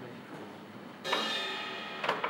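A cymbal on a drum kit struck once about a second in, ringing and slowly fading.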